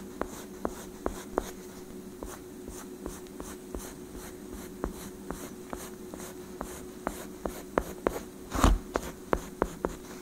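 Pencil scratching on sketchbook paper in quick, short shading strokes, over a steady low hum. A louder thump comes near the end.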